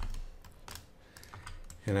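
Scattered light clicks from a computer mouse and keyboard as software is being operated, with a voice starting again near the end.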